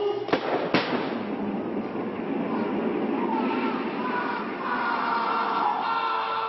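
Two sharp pyrotechnic bangs in quick succession, about a third and three quarters of a second in, as a wooden stage-set tower is blown up, followed by several seconds of dense noise of the blast and collapsing debris.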